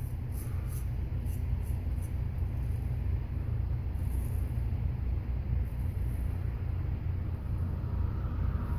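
Friodur 6/8" straight razor scraping through lathered stubble on the neck in short, crisp strokes that come in clusters. A steady low rumble runs underneath and is louder than the razor.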